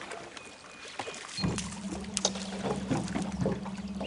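Steady low hum of a small boat's motor, starting about one and a half seconds in.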